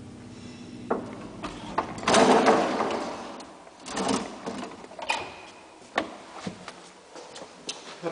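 Old Flohrs traction elevator's steady hum cutting off with a click about a second in as the car stops at the floor, then the collapsible scissor gate rattling loudly as it is slid open, followed by several clicks and knocks from the mesh landing door and its latch.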